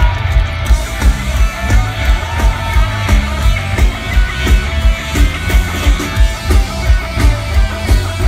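Punk rock band playing live through a festival PA, heard from within the crowd: distorted electric guitars and bass over a fast, steady drum beat.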